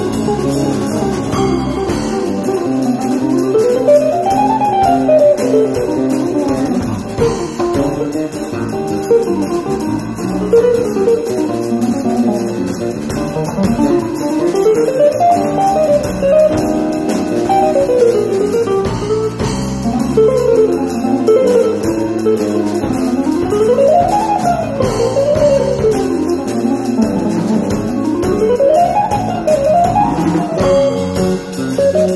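Jazz trio of electric guitar, bass guitar and drum kit playing live, the guitar playing runs of notes that climb and fall again, several times over.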